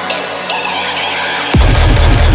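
Deathstep (heavy dubstep) music: a short break in which the deep bass drops out, then about one and a half seconds in a falling hit brings a heavy, loud bass back in.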